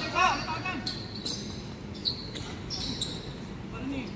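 Basketball being played on an outdoor court: short pitched calls from players in the first second, then a few sharp knocks of the ball over the next two seconds.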